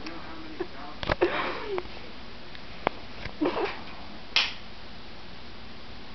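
Short breathy laughs and a sniff, with two sharp clicks from a wooden spring-loaded snap mouse trap being handled.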